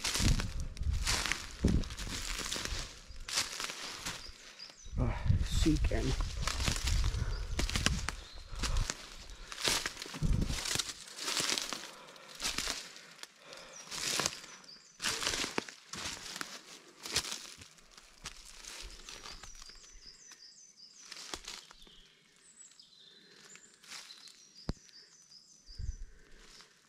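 Footsteps of a walker on a forest path, about one step a second, with a low rumble under the steps in the first ten seconds. The steps die away after about eighteen seconds, and faint high bird chirps repeat near the end.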